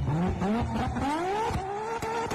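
Nissan Skyline R34 engine revving hard as the car pulls away: the pitch climbs steeply through two quick rises, then holds high with short breaks.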